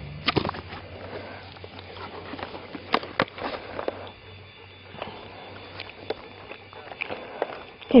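Scattered light knocks and rustles, irregular and about a second apart, over a low steady hum.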